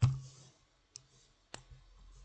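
A few sharp clicks: a loud one at the start, then two lighter ones about a second and a second and a half in.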